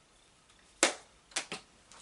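Plastic highlighter compact being handled: one sharp snap just under a second in, then two quicker clicks about half a second later.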